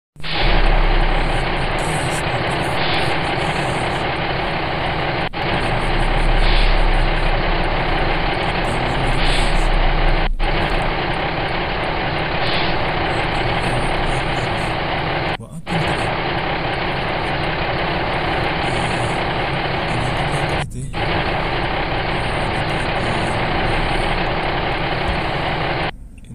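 Loud, steady vehicle engine noise with a heavy low hum, broken by short dropouts about every five seconds.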